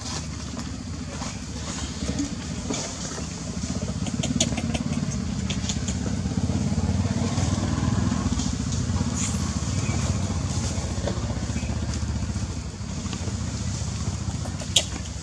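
A motor engine running steadily with a low rumble that grows louder through the middle and eases off near the end, with scattered faint clicks over it.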